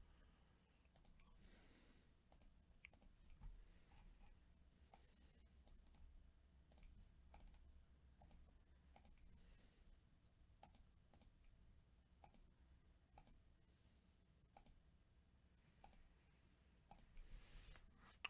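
Faint computer mouse clicks, one every half second to a second, repeatedly clicking a web page button to re-run a list randomizer; otherwise near silence.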